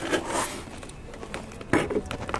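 Handling noise of a hand working around the radiator hose and thermostat housing: faint rustling and scraping, with a short louder scrape near the end.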